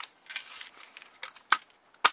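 Handling noise as the side-folding stock of an Arsenal SLR-106F AK rifle is swung on its hinge, with a sharp click about a second and a half in as it latches.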